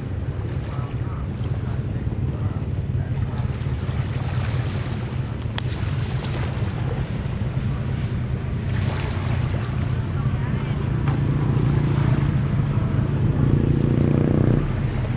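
A steady low engine hum that grows louder near the end, over small waves washing in and wind on the microphone.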